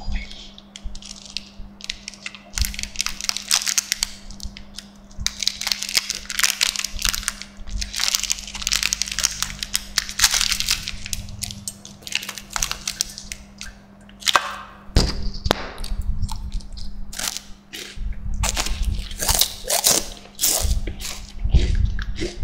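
Crinkly plastic wrapper of an Apollo chocolate wafer being handled and torn open, close to the microphone. From about halfway through comes crisp wafer crunching and chewing, with many sharp cracks and heavy low thuds.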